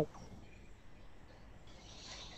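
Faint background noise from a video call's microphone, with soft high hiss near the end.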